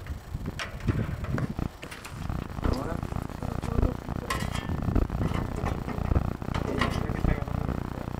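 Air-conditioner condenser fan running, with a low rumble of moving air at the grille and scattered metallic clinks and handling knocks. The newly fitted fan is drawing air in through the grille instead of blowing it out, so it has to be inverted.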